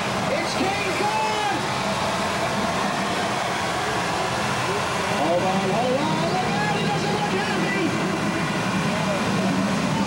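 Indistinct voices of several people over the steady low hum of a moving vehicle.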